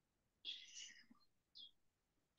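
Faint whispering over near silence: a short whispered phrase about half a second in and a brief whisper near the end.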